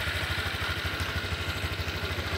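Motorcycle engine idling steadily, with a rapid, even low pulse.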